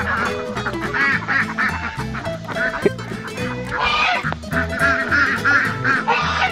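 A flock of chickens and ducks calling, with many short clucks and squawks and one louder squawk about four seconds in, over background music with a steady low beat.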